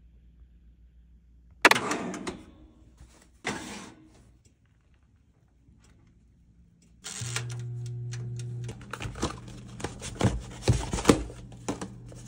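Two sharp metallic clacks, about two seconds apart, as a toaster oven's door and wire rack are handled. Then a steady low hum starts, with a run of small clicks and knocks over it.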